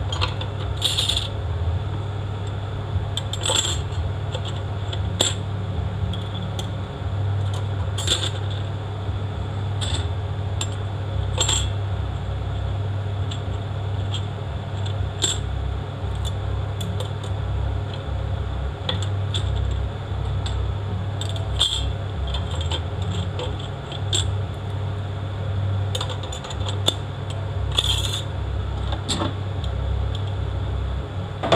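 Steel transmission clutch plates clinking and scraping against each other and the metal case as they are handled and set into place, in scattered irregular clicks. A steady low hum runs underneath.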